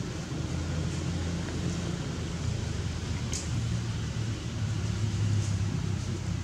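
Steady low engine-like hum running throughout, with a couple of faint clicks.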